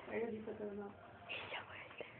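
A person speaking very quietly, almost whispering, in two short stretches.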